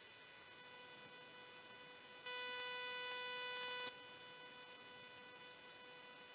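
A faint, steady electrical buzz with a stack of overtones on the audio line, which grows louder for about a second and a half in the middle.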